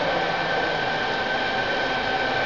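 Steady background hiss, like a fan or air conditioner, with a faint constant high whine.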